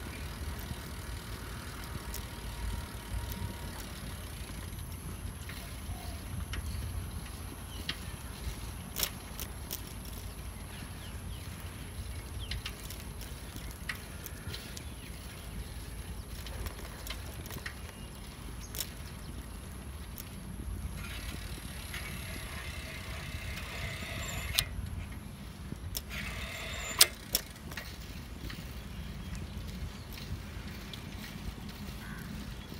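Bicycle rolling along a wet asphalt path: a steady low rumble of wind and tyre noise, with scattered sharp clicks and rattles from the bike, the loudest near the end.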